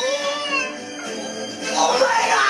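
An anime character's tearful, drawn-out wailing voice, gliding up and down in pitch, over background music; a second wavering cry starts near the end.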